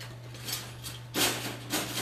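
Thin-gauge steel wire dog crate's gate and latch being worked by hand: three short scraping rubs of metal wire on wire, the loudest a little past the middle.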